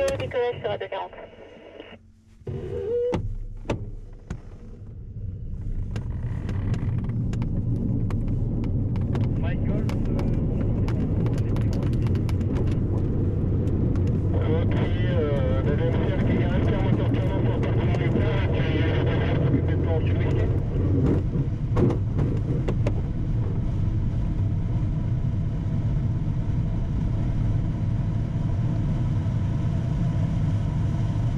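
Tow plane's piston engine at takeoff power and the rush and rumble of an aerotow takeoff roll, heard from inside a glider's closed canopy; the noise builds over a few seconds as the tow begins, then holds steady. A short radio voice comes through in the middle.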